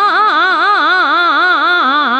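Hindustani classical vocalist singing a fast taan in Raag Bhairav, the voice running up and down the notes about four times a second without a break, over a steady drone.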